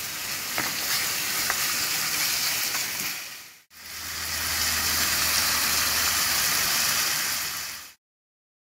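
Food sizzling steadily as it fries in hot oil in a pan. The sizzle drops out briefly a little past halfway, then comes back with a low hum beneath it.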